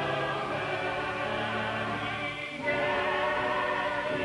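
Church choir singing sustained notes, with a short break between phrases about two and a half seconds in.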